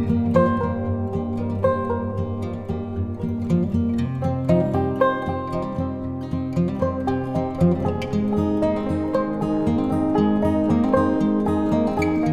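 Background instrumental music: a steady run of short notes over held low tones.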